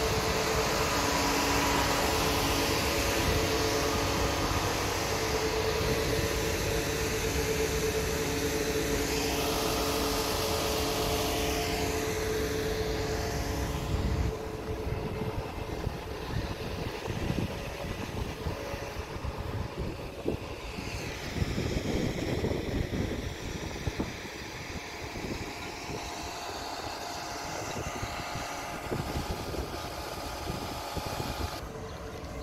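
Steady engine hum with several held tones from a large vehicle engine, which eases off about halfway through. Through the rest, uneven traffic noise and high whines that rise and fall come and go.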